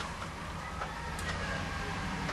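Steady low background hum with a few faint, light clicks.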